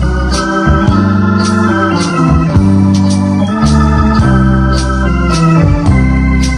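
Accordion music: held chords over a moving bass line, with a light steady beat about twice a second.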